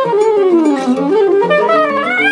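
Soprano saxophone playing a melodic line that slides down in pitch and climbs back up, over acoustic guitar accompaniment.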